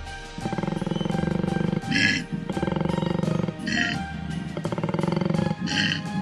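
Koala bellowing: three long, low, rasping calls made of rapid pulses, with short breathy sounds between them, over background music.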